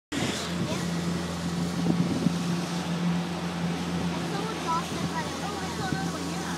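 A small center-console motorboat's outboard motor running at a steady pace under way, an even low hum under a haze of wind and water noise.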